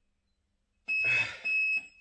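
Digital interval timer beeping twice, two high-pitched beeps about half a second each starting about a second in, marking the end of a one-minute workout round. A short grunt from the exerciser comes with the first beep.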